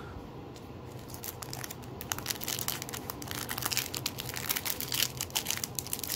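A foil trading-card pack wrapper crinkling and crackling as it is handled and torn open by hand, quieter at first, then a dense run of small crackles from a second or two in.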